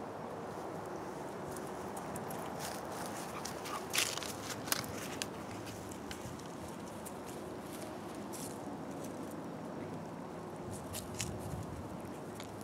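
Steady wind noise on the microphone, with a few sharp crackles and rustles of dry stalks and grass about four seconds in and again near the end.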